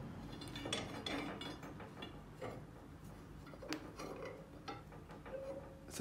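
Faint, scattered metallic clinks and knocks as a steel rebar and the bending pins are handled and set in place on a rebar bender's steel bending table.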